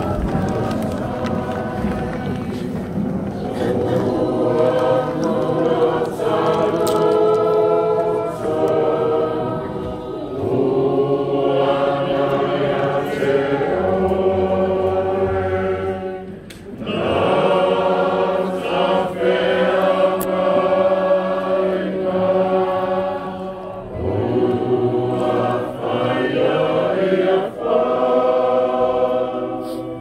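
A congregation singing a hymn together, in long held phrases with short breaks about ten, sixteen and twenty-four seconds in.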